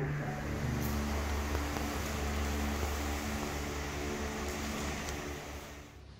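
A steady mechanical hum with an even hiss over it, as from a fan or cooling unit running, with a few faint clicks.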